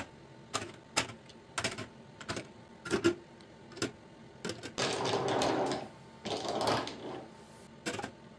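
Glass nail polish bottles set down one at a time on a clear acrylic organizer shelf, giving sharp separate clicks about every half second to a second. Between about five and seven seconds in there are two longer rustling, rattling stretches as bottles are handled.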